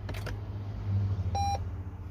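Lexus NX 300h hybrid's start-up beep: a single short electronic beep about one and a half seconds in, after the power button is pressed. It signals that the car is on, with no starter motor or engine heard, since the hybrid wakes on electric power. A low steady hum runs underneath.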